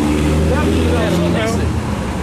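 A motor vehicle's engine running on the street, a steady low drone, with snatches of talk over it.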